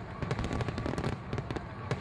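Fireworks crackling: many rapid, irregular pops and bangs over a low rumble.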